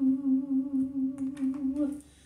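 A woman's voice holding one long note with a slight vibrato, the drawn-out end of a sung line. It stops just before the end.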